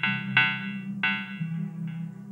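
Electronic music from hardware synthesizers, including a Korg Monologue: a steady low bass line under bright, sharp synth stabs that ring out and fade, a new one about a third of a second in and another about a second in.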